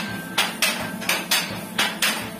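Sharp metallic clacks from a handloom's spring-loaded mechanism, repeating about two times a second in a slightly uneven rhythm.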